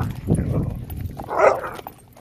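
A dog barks once, a loud short bark about one and a half seconds in, with lower rough dog noise before it.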